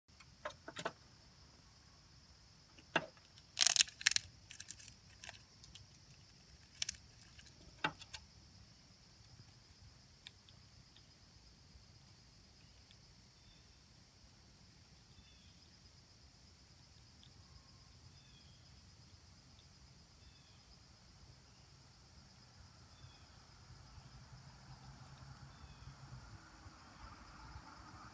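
A burst of sharp clicks and clatters in the first eight seconds, hard objects knocking together, then quiet outdoor background with faint short bird chirps every second or two.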